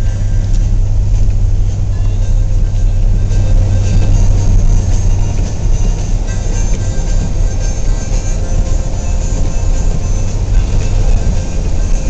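Steady road noise inside a moving car's cabin at about 45 mph on rain-wet pavement: a continuous low rumble of engine and tyres with tyre hiss from the wet road.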